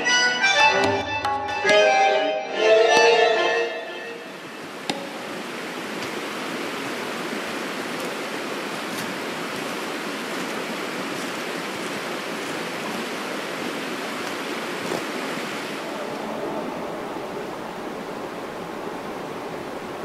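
Music with plucked, pitched notes for the first few seconds, ending about four seconds in. After that, a steady, even rush of flowing stream water.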